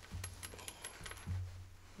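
Faint Cash App sound: a run of quick, light clicks like coins.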